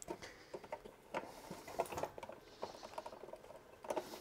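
Small irregular clicks, taps and rustles of thick insulated cable tails being handled and pushed into a consumer unit's main switch terminals, the cables knocking against the switch and enclosure.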